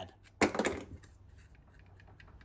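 Clicks and clatter of engine lifter trays and a roller lifter being handled on a workbench, with a short burst about half a second in, then faint light ticks.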